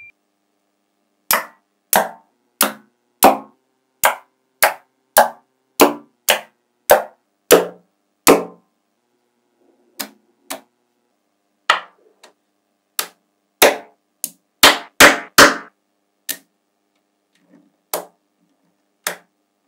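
Clusters of small magnetic balls snapping against a magnetic-ball structure: sharp clacks, about a dozen evenly paced roughly every 0.6 s, then after a short pause more irregular ones, with several in quick succession near the end.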